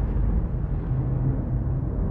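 A deep, steady rumbling drone from a documentary trailer's soundtrack, with no distinct notes or hits.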